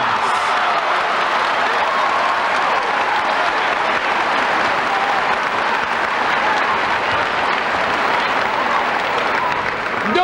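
Large audience applauding, a steady, even clapping that holds throughout and stops just as speech resumes at the end.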